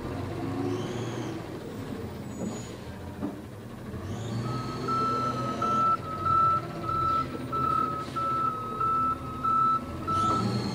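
Garbage truck's backup alarm beeping at a steady pitch about twice a second, starting about halfway through, over the truck's diesel engine running.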